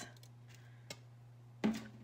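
Quiet room tone with a steady low hum, broken by one sharp click about a second in. A short vocal sound comes near the end.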